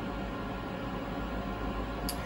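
Steady hum and hiss of an idle, powered-up Fadal VMC 15 vertical machining center, with no axis motion after its probing cycle has finished.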